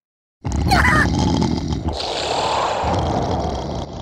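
Loud cartoon sound effect that starts abruptly about half a second in, with a short squealing cry around a second in, then turns into a steady rushing noise.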